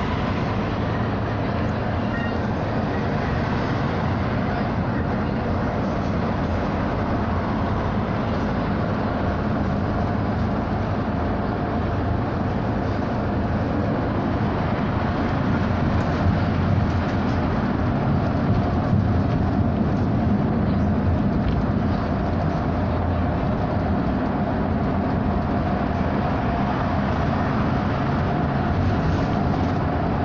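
Interior of an SOR NB 18 articulated city bus travelling at speed: a steady drone of engine, tyre and road noise heard from inside the cabin, unchanging throughout.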